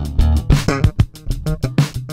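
Funk bass line played on a Sterling by Music Man S.U.B. Ray4 electric bass, recorded direct-in, in short, punchy low notes over an Oberheim DMX drum machine beat.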